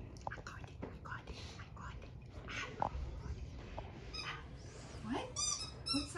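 A dog at play on a carpet: snuffles, breathy puffs and small clicks, then a quick run of high-pitched squeaks in the last second.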